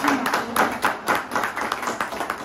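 A small group of people clapping their hands: many quick, overlapping claps.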